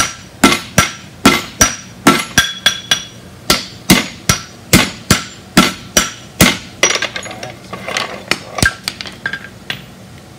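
Hand hammers forging red-hot iron held in tongs on an anvil, two smiths striking in turn at about two to three blows a second, each blow ringing off the anvil. From about seven seconds in the blows turn lighter and quicker, then stop just before the end.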